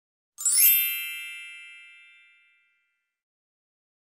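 A single bright bell-like ding, a chime sound effect, struck once and ringing out to nothing over about two seconds, marking a task being ticked off the robot's checklist.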